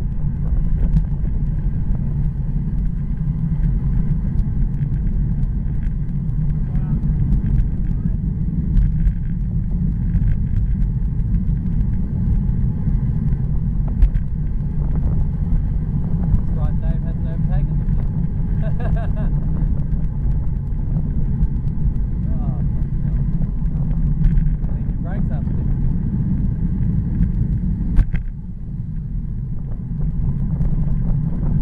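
Wind rushing over the microphone of a bicycle-mounted camera on a fast descent at about 30 km/h, a steady low rumble. Near the end a sharp click comes, and the rumble drops a little quieter as the bike slows.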